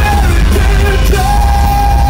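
Rock band playing live at full volume, with heavy bass and drums. The lead singer yells into the microphone, holding one long note that starts a little past halfway.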